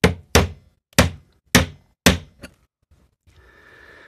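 A metal tool knocking against the machined aluminium end cap of a head torch clamped in a vise: about six sharp metallic knocks roughly half a second apart, the last one weaker. The end cap is stuck, probably glued, and the knocks are an attempt to tap it off.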